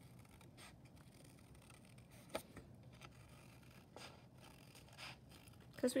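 Small scissors cutting paper: a few quiet, irregular snips as the blades work slowly around the edge of a paper mask.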